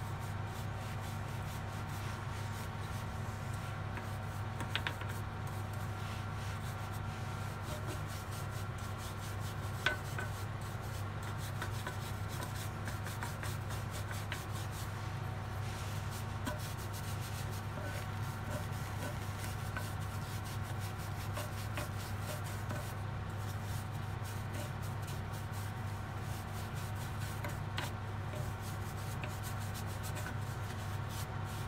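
A polish brush rubbing and scrubbing boot polish over the rough stone surface of a large ammonite fossil, with a steady low hum underneath and a few small clicks.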